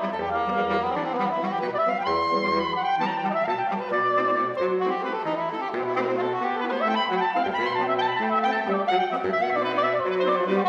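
Saxophone quintet of soprano, alto, two tenors and baritone playing together without a break, several moving lines stacked over a baritone bass line of separate held low notes.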